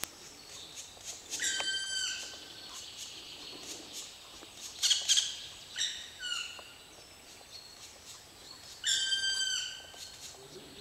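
Woodpecker nestling calling from inside its tree nest hole: separate, clear, pitched calls of about half a second each, dropping at the end, repeated every few seconds, with one louder, harsher burst about halfway through.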